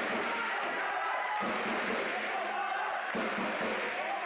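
A basketball being dribbled on a hardwood court, with voices and crowd noise carrying through the arena.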